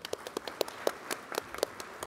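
Sparse applause from a conference audience at the close of a session: individual claps stand out, irregular and not in unison.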